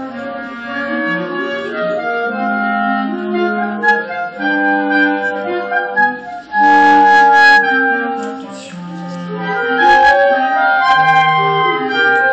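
A clarinet quartet playing together, four clarinets holding overlapping notes in parts. The sound dips briefly about halfway through, then comes in at its loudest, and swells again near the end.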